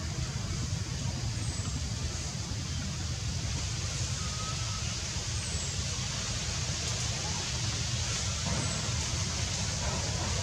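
Steady outdoor background noise: a low rumble with a hiss over it, and a few faint short whistles or chirps scattered through it.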